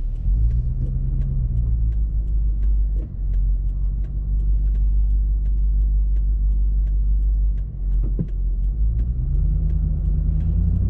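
Low, steady rumble of a car heard from inside the cabin while it waits in traffic. The engine note rises near the end as the car pulls away. A light ticking repeats about twice a second throughout.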